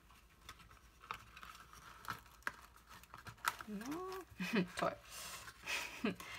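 Small cardboard box being handled and pressed shut over a filling of shredded paper, with faint crinkling rustles and a few light clicks of the card.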